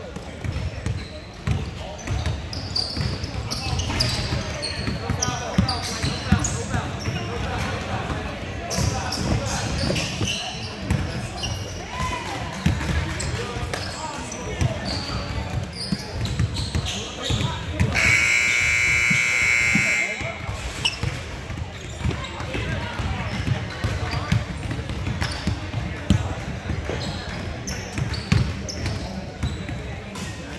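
Gymnasium scoreboard buzzer sounding one steady tone for about two seconds, a little past halfway through, the horn marking the end of the game. Around it, basketballs bounce on the hardwood and players and spectators talk and shout in the echoing gym.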